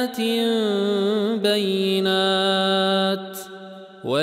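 A male Quran reciter chanting in the Warsh reading, holding a long drawn-out vowel with a wavering melodic ornament. There is a brief break about a second and a half in, then a steady held note that fades away near the end.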